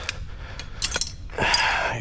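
Pieces of brass and copper pipe scrap clinking against each other as they are handled with bolt cutters: a sharp click about a second in, then a longer rattle near the end.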